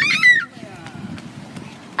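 A child's short, very high-pitched squeal, rising then falling in pitch, lasting about half a second. Faint low rustling and handling noise follows for the rest of the time.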